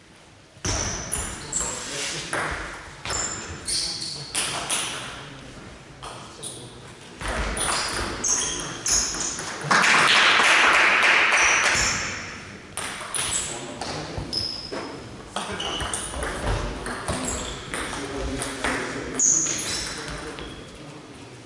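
Table tennis balls clicking sharply as they are hit and bounce, with voices in a large hall. About ten seconds in comes a loud burst of noise lasting a couple of seconds.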